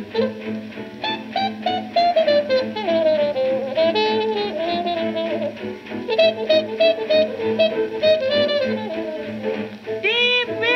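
1939 swing band playing an instrumental passage on a 78 rpm record: horns carry the melody with slides over a steady beat from piano, guitar, bass and drums.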